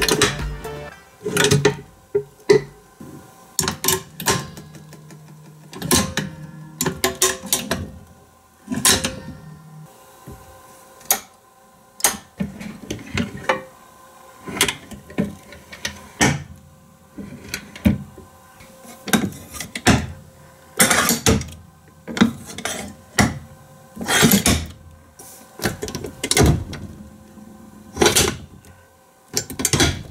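Old cast-metal manual elevator car switches being worked by hand: irregular metal clunks and clicks, about one or two a second, as the handles are swung and released. Soft background music plays underneath.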